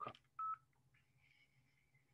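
A single short electronic beep about half a second in, then near silence.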